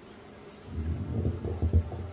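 Low buzzing rumbles picked up close on a handheld microphone, coming in uneven bursts from about a third of the way in and loudest near the end.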